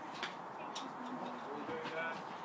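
Faint background voices with a few light clicks, one a little after the start, one near the middle and one near the end.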